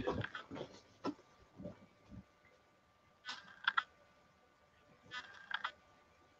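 Faint handling noises of a sheet of paper being picked up and held up: a few small clicks, then two short rustles, one about halfway through and one near the end, over a faint steady hum.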